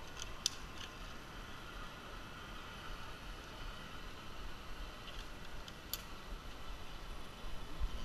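Two sharp metal clicks of zip-line harness hardware being handled, about half a second in and again about six seconds in, over a faint steady low rumble and a faint wavering high whine.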